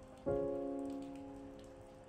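A calm piano chord struck about a quarter second in, fading slowly, over steady rain.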